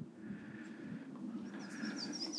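Faint outdoor background, then near the end a bird's quick series of high, thin chirps.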